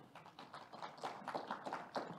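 Sparse applause from a small audience: scattered individual hand claps.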